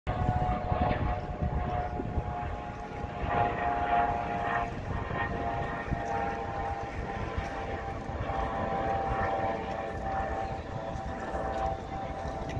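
A steady, distant engine drone holding several even tones throughout, over a low, gusty rumble of wind on the microphone.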